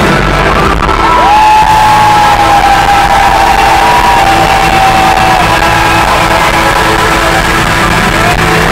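Live rock band playing loudly with electric guitar. About a second in, a long high note slides up into pitch, holds for about four seconds while sagging slightly, and stops.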